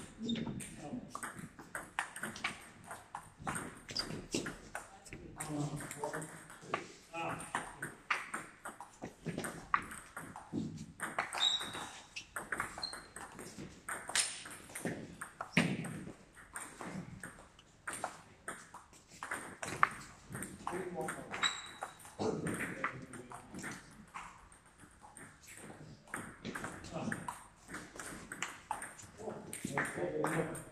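Table tennis rallies: a plastic ball clicking sharply off the bats and the table in quick, irregular runs of strikes, with short pauses between points.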